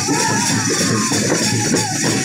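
Loud live folk music from a village dance troupe: hand drums beaten in a steady rhythm under a wavering melody line, recorded close up among the dancers.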